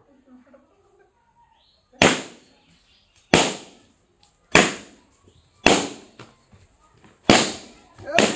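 Five balloons lying on concrete popped one after another by a stick, each a single sharp bang with a brief tail, spaced about one to one and a half seconds apart.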